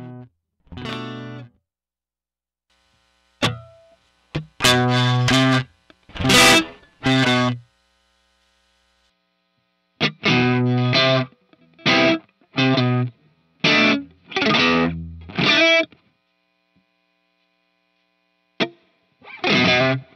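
Cort G250SE electric guitar played through the Hotone Ampero II Stomp's Dr Z Maz 38 Sr amp simulation with overdrive: short distorted chords and stabs, each cut off into silence, in three phrases with pauses of about two seconds between them.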